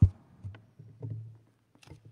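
Handling knocks picked up close by a lectern microphone: one loud low thump at the start, then a few softer knocks and a sharp click near the end.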